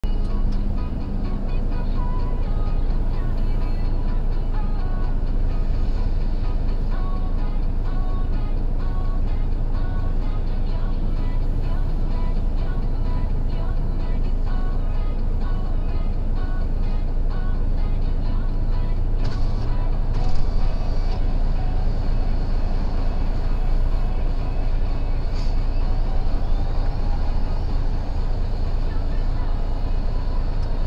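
Steady low rumble of a stopped vehicle idling, heard from inside its cabin, with music and a voice running underneath. There is a brief sharp knock about two-thirds of the way through.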